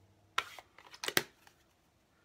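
A few short, sharp clicks and taps of small plastic craft tools being handled and set down on a desktop, the loudest about a second in.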